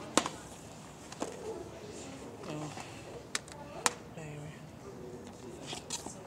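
Faint background voices of people talking, with a few sharp clicks and knocks scattered through; the loudest click comes just after the start and another a little before four seconds in.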